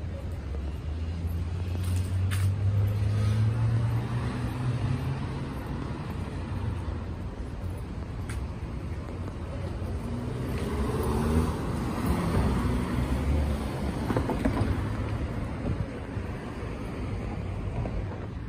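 City street traffic: motor vehicles driving past with a steady road-noise background. An engine's low hum swells and rises slightly over the first few seconds, and another vehicle passes around the middle.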